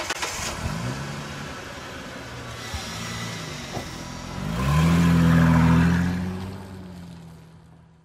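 Car engine sound effect: an engine running and revving, rising in pitch about four and a half seconds in to a loud steady note, then fading away toward the end.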